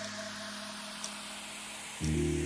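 A steady, even hiss of outdoor noise, with faint background music underneath.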